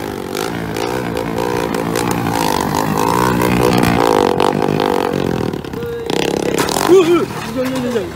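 Motorcycle engines revving, their pitch rising and falling over and over. Near the end, people shout.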